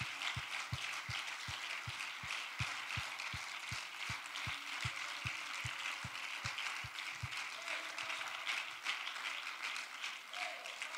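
Congregation clapping and applauding, a steady patter of many hands. A regular low beat close to three times a second runs under it and stops about seven seconds in.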